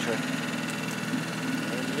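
Boat's outboard motor idling with a steady, even low hum.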